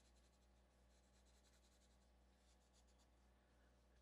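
Near silence: faint pencil strokes scratching on drawing paper, a run of quick short strokes over a low steady hum.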